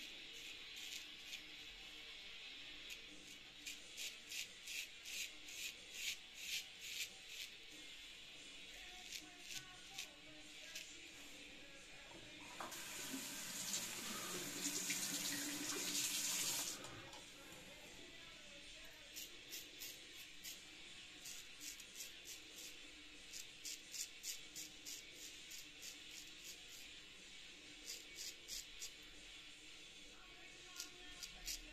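Straight razor scraping through lathered stubble in short, quick strokes, a few a second, in two runs. Between them, about halfway through, a water tap runs for about four seconds.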